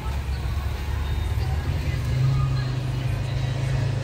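Low rumble of a motor vehicle engine running nearby, swelling louder about halfway through and dropping off at the end.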